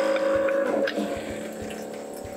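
Small electric pump in a USB-powered faucet running with a steady whine after being switched on by its touch button, with water pouring from the spout into a stainless steel sink. The whine is loudest for about the first second, then settles a little quieter.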